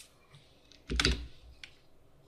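Typing on a computer keyboard: a few scattered keystrokes, with a quick burst of louder key clicks about a second in.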